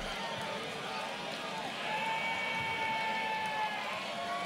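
Crowd voices chattering and calling out, with one long held call in the middle.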